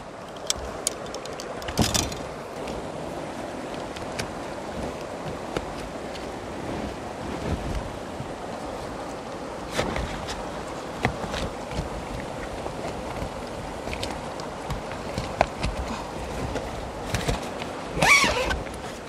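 Steady rush of a whitewater river, with a few light clicks and rustles as aluminium coaming rods are worked into the sleeve around a packraft's cockpit rim.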